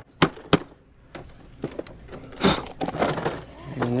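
Wire-mesh cage traps clicking and rattling as juvenile squirrels scramble from a colony trap into a cage trap. Two sharp clicks come just after the start, then irregular scraping and rattling, loudest about halfway through.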